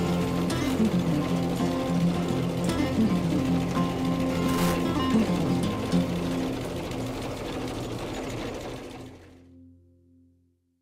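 Background music with a rapid, even mechanical clatter under it, both fading out about nine seconds in.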